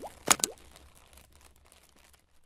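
Logo-animation sound effects: two sharp pops, each with a short rising swoop, in the first half-second, then a faint tail that fades out.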